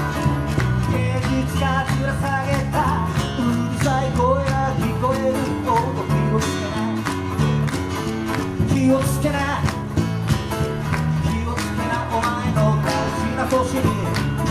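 A small live band of electric bass and two acoustic guitars playing a song with a steady beat, a wavering melody line over the strummed chords.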